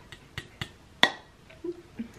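A few light clicks and then one sharper clack about a second in: a glass coffee carafe being set back down after the pour.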